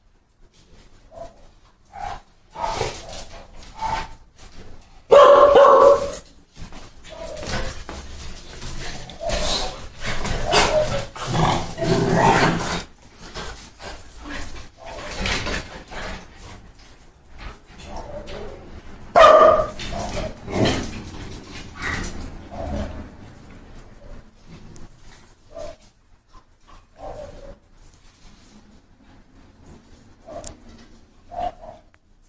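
Several dogs barking and yipping irregularly, with the loudest barks about five seconds in and again around twenty seconds, and short clicks and scuffles between.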